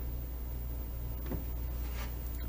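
A pause in dialogue with a steady low hum and faint hiss, the background noise of an old television soundtrack.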